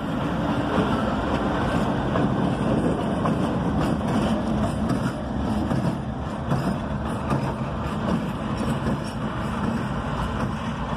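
CSX diesel locomotives running past at low speed and moving away: a steady engine drone with the rumble of wheels on the rails, a little quieter in the second half.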